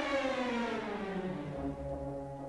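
Symphony orchestra playing a descending passage: the pitch falls steadily through the first second and a half, then settles on held lower notes.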